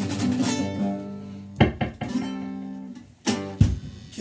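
Nylon-string classical guitar and electric bass playing the closing chords of a song. A held chord rings and fades, then come two sharp strums about one and a half seconds in, another ringing chord, and two loud sharp final hits near the end.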